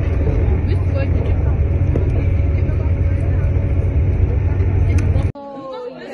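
Steady low rumble of engine and road noise heard from inside a moving road vehicle. It cuts off abruptly about five seconds in.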